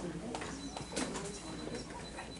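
Soft murmured voices in a room, with a few light clicks and a faint steady high tone partway through.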